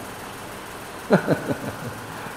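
A man laughing: a quick run of about five short 'ha' bursts, each falling in pitch, starting about a second in, over a steady background hum.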